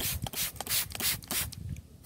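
Handling noise on a handheld camera's microphone: a run of short, brushy rubbing scrapes, about three a second.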